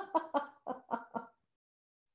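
A person laughing: a run of about six short laughs that fade out over the first second and a half.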